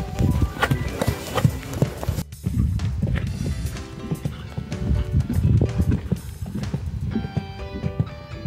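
Hoofbeats of a horse cantering and jumping fences on a sand arena, with background music playing over them.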